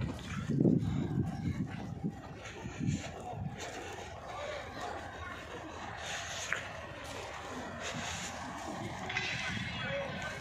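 Indistinct voices of people talking nearby, loudest in the first second, over a steady outdoor background.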